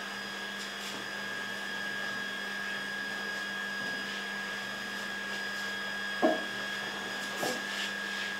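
Steady background hum and hiss with a faint held low tone and a higher whine, and a brief short sound about six seconds in.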